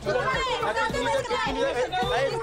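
Speech only: several people talking over each other, a woman's voice among them.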